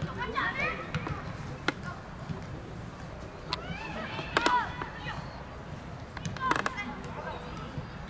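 Outdoor youth football match: brief shouts and calls from young players, broken by several sharp knocks of the ball being kicked.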